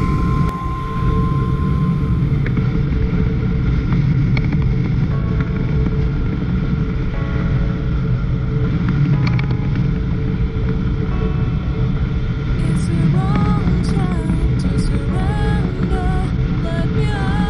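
Steady low rush of wind and road noise from a motorcycle cruising at expressway speed. Faint music with a wavering melody sits under it, clearest over the last few seconds.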